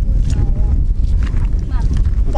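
Wind buffeting an outdoor camera microphone: a loud, steady low rumble, with faint voices through it.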